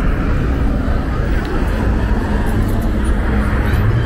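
City street traffic: cars passing on a busy multi-lane road, a steady rumble of engines and tyres.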